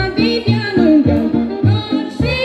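Romanian folk song: a male voice singing into a microphone over amplified backing music with a steady bass beat, heard through the stage PA speakers.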